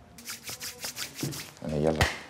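Someone moving about: a quick run of light clicks and rustles, then a short vocal sound near the end that is not a word.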